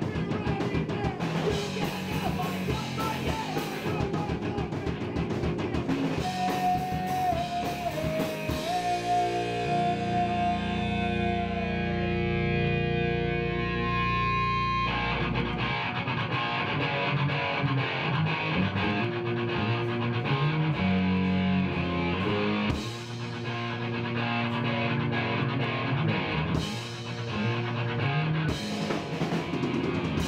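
Punk rock band playing live in a small room: distorted electric guitars, bass and drum kit. About nine seconds in the drums drop out and the guitars hold ringing chords for several seconds, then the full band comes crashing back in about fifteen seconds in.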